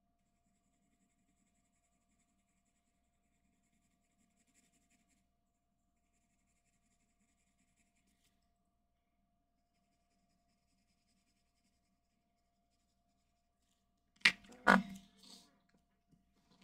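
Graphite pencil lightly shading paper, very faint, with a couple of brief scratchy passes. Near the end comes a cluster of loud knocks and clicks.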